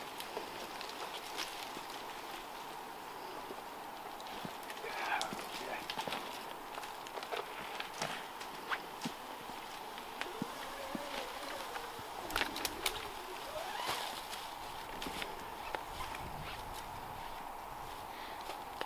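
Scattered light clicks and knocks of climbing gear and boots against a tree as a saddle hunter comes down his rope, over a faint steady outdoor background.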